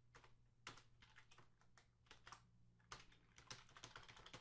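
Faint computer keyboard typing: irregular key clicks, several a second, as code is typed.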